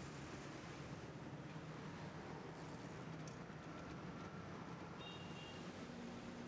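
Faint street traffic noise, a steady low rumble and hiss of passing vehicles, with a short high-pitched tone about five seconds in.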